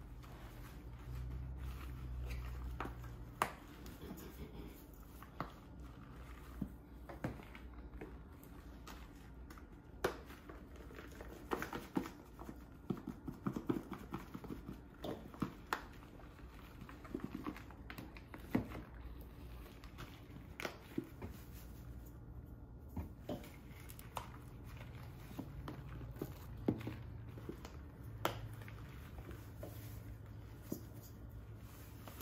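A utensil mixing seasonings into dry plantain fufu flour in a pan: scattered light taps, clicks and scrapes, over a faint low hum.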